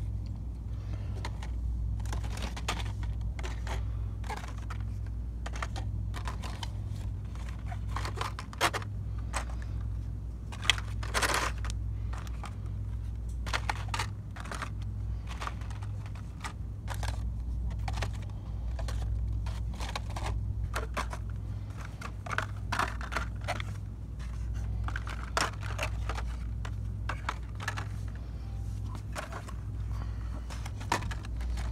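Hot Wheels blister-pack cards being handled and flipped through on store peg hooks: irregular plastic clicks, clacks and crinkles. A steady low hum runs underneath.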